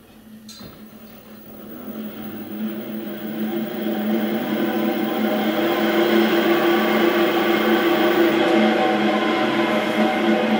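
A brushless electric bike hub motor spinning up under throttle: a Sparta 24-volt hub run on 36 volts, driving its free wheel. Its hum of several steady tones grows louder over the first five seconds, then holds steady, going a bit faster than it should because of the higher voltage. A click comes about half a second in.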